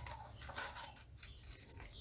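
Faint handling noises: a small cardboard box and a small plastic bag of spare soldering-iron tips being handled, with light rustling and a few soft clicks.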